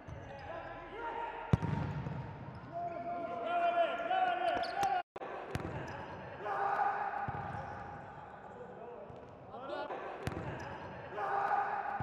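A futsal ball kicked hard on an indoor court, with sharp kicks about a second and a half in (the loudest), around five and a half seconds and around ten seconds, echoing in a large hall. Players shout between the kicks.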